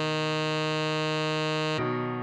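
A synthesized tenor saxophone holds one steady note, a written F, then cuts off sharply about 1.8 s in. A softer piano-like tone follows and fades away.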